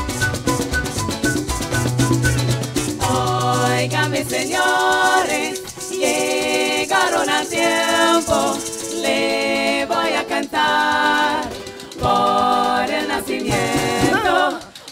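A parang band playing live: strummed guitar and cuatro over a bass line, with maracas shaking. About four and a half seconds in, the bass drops out and several voices sing in close harmony over the maracas and strings.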